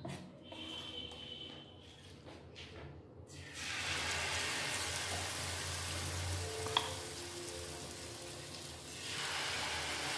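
Banana malpua batter sizzling as it fries in hot oil in a frying pan. The sizzle starts suddenly about a third of the way in, after a quieter stretch, and a single click sounds a little past the middle.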